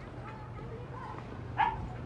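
A dog barks once, a single short bark about one and a half seconds in, over a steady low hum.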